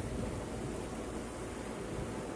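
Steady, even wash of sea surf on a rocky shore.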